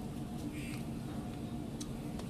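Eating by hand: a couple of short mouth clicks and smacks from chewing, about two-thirds of a second in and again near the end, over a steady low hum.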